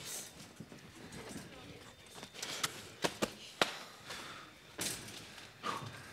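A handful of sharp knocks and thuds from movement on a stage, several close together in the middle, under faint murmuring voices.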